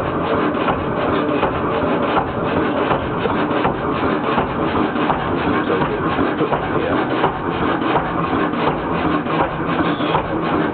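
Kelvin K1 single-cylinder marine engine running steadily on diesel, a continuous rapid mechanical clatter with no change in speed.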